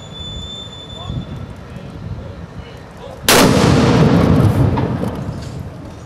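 A field howitzer fires a single shot, the traditional noon gun, a little past halfway: a sudden loud blast followed by its echo dying away over about two seconds.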